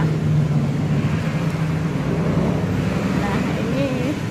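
A steady low mechanical hum over a wash of background noise, fading a little as it goes, with faint voices near the end.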